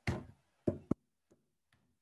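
Three sharp knocks within about a second, then faint, evenly spaced ticks about two and a half a second.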